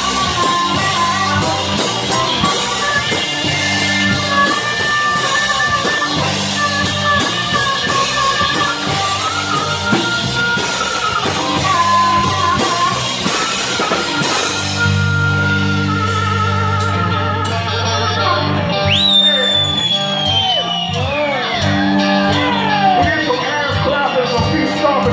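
Live blues band playing an instrumental break: a harmonica plays long held notes into a vocal mic over electric bass and drums. Near the end a high note slides down over a few seconds.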